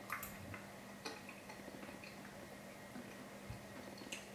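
Faint mouth sounds of a person chewing a forkful of cheese-sauced broccoli: a few small, scattered clicks over a low, steady room hum.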